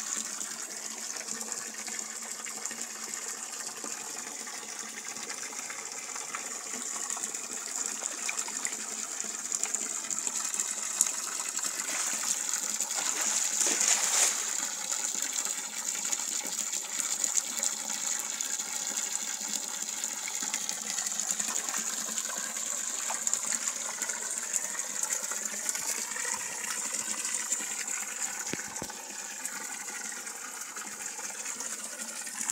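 A stream of water pouring and splashing steadily into a fish pond as it is refilled, briefly louder around the middle.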